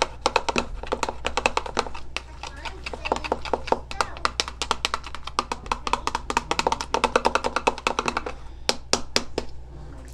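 A utensil stirring hyaluronic acid powder into a gel in a bowl, ticking against the bowl several times a second in quick, uneven strokes. The strokes thin out near the end, over a low steady hum.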